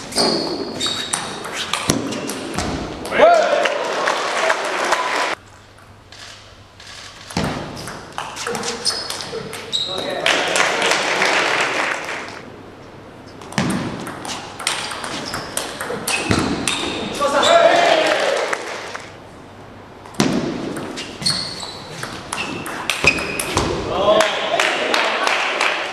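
Table tennis rallies: the ball clicks quickly back and forth off the bats and table. Between points there are bursts of crowd noise and shouts, in several waves with quieter gaps between them.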